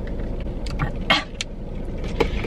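Steady low hum inside a car cabin, as of the engine running, with a few small clicks and one short, sharp noise about a second in.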